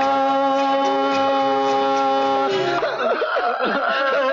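A long held chord ending a Hindi film song, which breaks off about two and a half seconds in into a jumble of men's voices and laughter.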